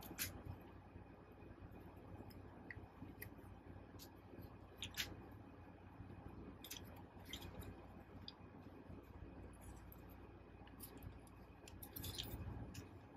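Faint, scattered clicks and taps of hard plastic parts being handled and moved on a Transformers Studio Series '86 Ultra Magnus figure during its transformation, with quiet gaps between them.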